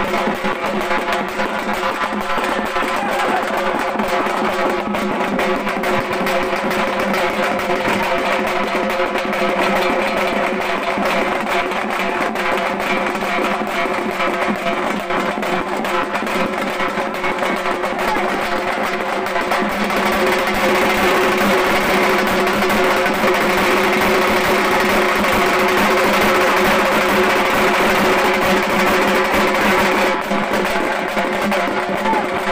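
Several halgi frame drums beaten with sticks in a fast, dense rhythm, with a steady pitched tone running underneath. The playing grows a little louder about two-thirds of the way through.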